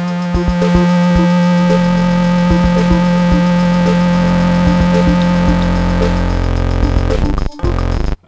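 Soviet P.I.F toy synthesizer playing a held low note with a buzzy, overtone-rich tone, played an octave down. A second, lower note joins about four seconds in. Short percussive hits sound over them, and the sound cuts off shortly before the end.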